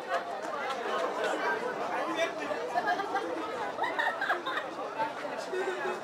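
An audience of children chattering: many overlapping voices with no single clear speaker.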